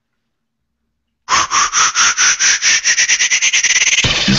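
Closing theme music's electronic intro: after about a second of silence, a rapid train of pulses starts, about six a second at first, and speeds up and rises in pitch as a build-up into the theme song.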